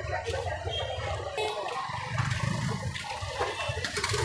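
Busy street ambience: a steady wash of crowd chatter and traffic noise, with a low rumble that swells about two seconds in.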